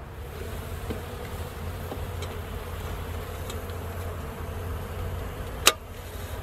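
Honeybees buzzing steadily at the hive, with one sharp click near the end.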